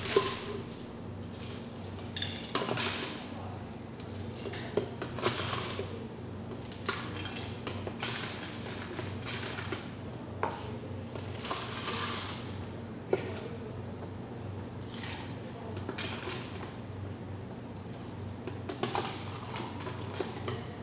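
Crushed ice being scooped from an ice bucket and dropped into a stainless-steel cocktail shaker tin: irregular clinks, rattles and scrapes of ice against metal and plastic, over a steady low hum.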